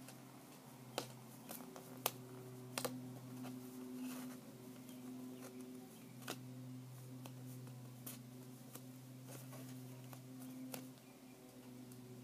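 Paper and sticky tape being handled while a cardboard tube is wrapped: scattered small clicks and taps at irregular moments, over a steady low hum.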